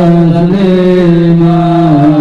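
A man singing sholawat (Islamic devotional song) into a microphone in long, drawn-out held notes, the pitch stepping down a little between notes.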